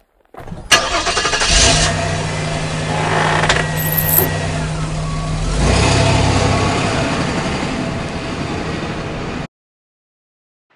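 Car engine sound effect: an engine starting and running loudly with some revving, then cutting off suddenly about half a second before the end.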